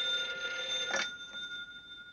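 Desk telephone bell ringing, with a click about a second in, after which the ringing fades away.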